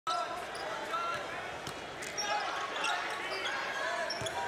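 A basketball being dribbled on a hardwood court, several bounces, over the steady murmur of an arena crowd.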